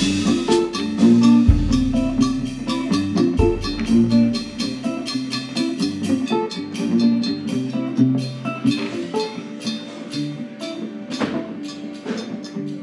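Electric slide guitar played with a metal bottleneck slide, a dense run of gliding notes over a steady cymbal pulse from a drum kit. A few deep low notes sound in the first four seconds, and the music gradually gets quieter as the song winds down.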